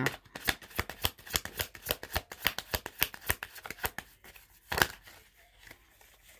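Tarot cards being shuffled by hand: a rapid run of crisp card clicks, about five a second, for the first four seconds, then one louder snap of a card just before the end and a few faint taps.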